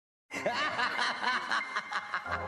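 A laugh sound effect that starts suddenly about a third of a second in: a run of short rising-and-falling 'ha' syllables, about two or three a second, over a faint steady high tone.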